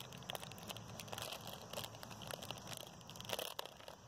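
Faint, irregular crinkling and crackling with many small scattered clicks, like plastic or wrapping being handled close to the microphone.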